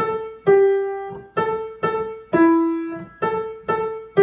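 Acoustic upright piano playing single notes one at a time in a slow, even rhythm: repeated A's answered by a lower G and then a lower E, each note struck and left to ring and fade.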